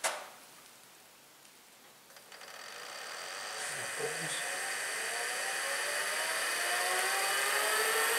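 BOLA Junior bowling machine's electric wheel motors spinning up after being switched on at the control panel: a whine that starts about two seconds in and climbs steadily in pitch and loudness as the wheels gather speed. A light click sounds near the middle.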